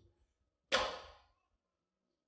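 A leather cat-o'-nine-tails whip lashed once: a single sharp swish that fades within about half a second.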